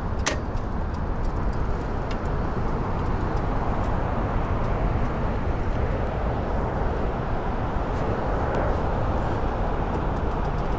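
Steady outdoor noise of traffic on the road bridges overhead, with wind on the microphone, and a short click just after the start.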